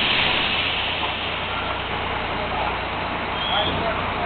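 Steady, loud machinery noise from a drilling rig floor, with a hiss that is strongest in the first second and then eases off.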